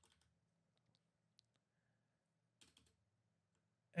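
Near silence, with a few faint computer keyboard clicks about a second and a half in and again near three seconds.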